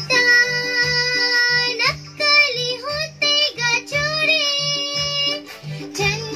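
A young girl singing a song over a backing track of plucked strings and a steady beat about twice a second. She holds one long note for nearly the first two seconds, then sings shorter phrases.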